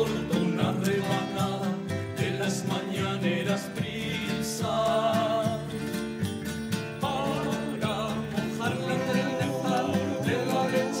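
Extremaduran folk song in jotilla rhythm played live: men's voices singing over strummed acoustic guitars and electric bass.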